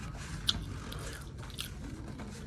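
A person chewing a mouthful of food with the mouth closed: soft, wet mouth sounds with a few short sharp clicks, about half a second in and again a little after a second and a half.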